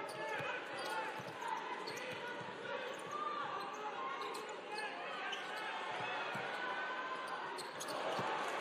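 Basketball game sound: the ball being dribbled on a hardwood court, sneakers squeaking as players cut, and the voices of the crowd and players over a steady crowd murmur.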